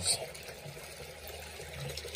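Water swishing quietly and evenly in a plastic gold pan as it is swirled over fine gold concentrate.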